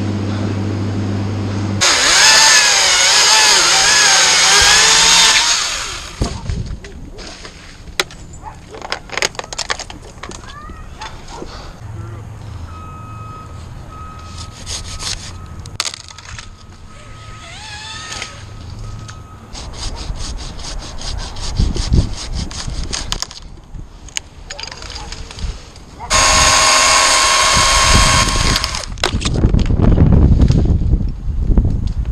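A chainsaw running in two loud bursts, the first about two seconds in with its pitch wavering up and down for about four seconds, the second near the end, steadier. Scattered knocks and clicks come between the bursts.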